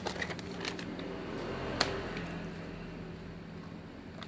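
Thin plastic bag rustling and crinkling while a new motorcycle ignition coil is taken out of it and handled, with small scattered clicks and one sharp click about two seconds in, over a steady low hum.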